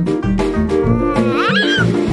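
Upbeat background music with a steady beat and plucked notes. About halfway through, a baby giggles briefly over it in a high voice that rises and falls.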